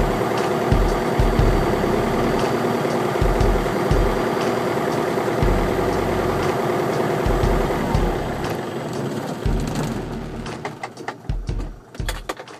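Cessna 150's four-cylinder Continental O-200 engine running steadily at low power on the ground, heard from inside the cockpit; the sound fades away over the last few seconds.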